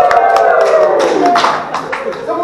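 A group of people shouting together in one long cheer that slides down in pitch and dies away about a second and a half in, with scattered hand claps.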